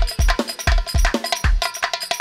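Live Balkan Romani band music with a driving beat: deep drum beats about three or four a second and sharp, bright percussion strokes between them. The deep beats drop out near the end, leaving lighter strokes.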